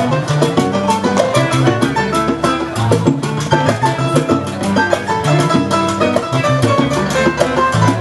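Salsa music: a busy, even percussion rhythm over a bass line that steps from note to note.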